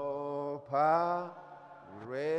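A man singing slow, long held notes in a chant-like way: two sustained notes, the second louder, then a brief lull before another note rises in near the end.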